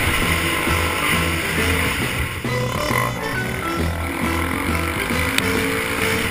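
A dirt bike engine running under way with wind noise, under a music track whose bass line steps from note to note.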